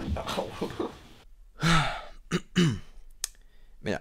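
A person sighing twice in exasperation: two breathy exhalations, each falling in pitch, about a second apart. A couple of faint clicks fall between and after them.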